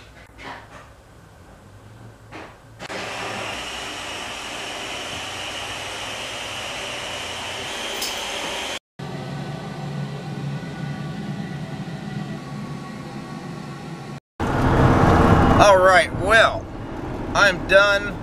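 A few soft clicks, then two stretches of steady rushing noise split by a sudden cut; from about fourteen seconds in, voices over the low, steady running noise of a car inside its cabin.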